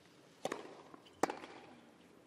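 Two tennis balls struck by rackets about a second apart, the exchange of a rally: a duller hit, then a sharper, louder crack.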